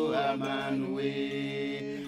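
Voices singing a slow chant in long held notes.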